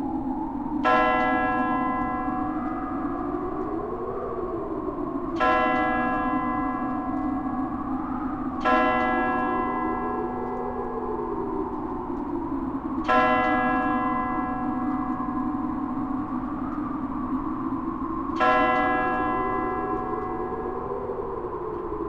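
A large bell tolling five slow strokes a few seconds apart, each ringing out and fading, over a low sustained drone that slowly swells and bends up and down in pitch.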